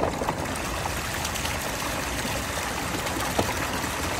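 Backyard pond's rock waterfall running: a steady splash and trickle of water falling over the stacked rocks. The water feature has been cutting off and on, for a reason the owner does not know.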